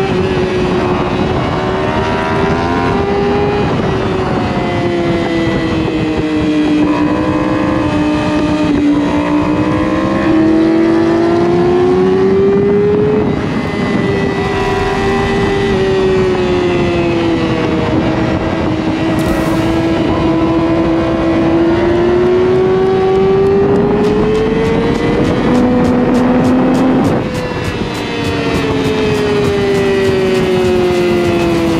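Yamaha R6's inline-four engine at high revs, its pitch rising and falling as the throttle is worked through the bends, with wind rush over it. Revs drop briefly a little before the end.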